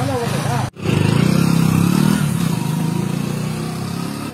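A motorcycle engine running with a fast, even beat, starting abruptly just under a second in and gradually fading toward the end.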